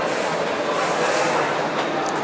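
Satake SRZ5500X rice huller running on display: a steady mechanical rattle and whir.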